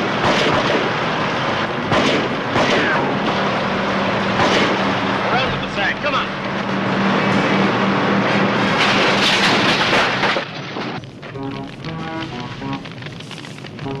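Gunshots and booms over the steady drone of a tractor engine, in a dense action-soundtrack mix. About ten seconds in, the noise drops away and dramatic TV score music takes over.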